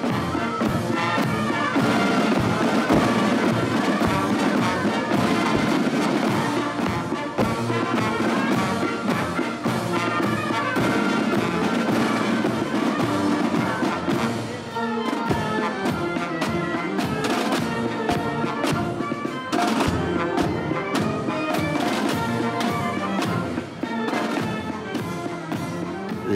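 Marching band playing a march: brass and flutes over snare and bass drums, the drum strokes steady throughout.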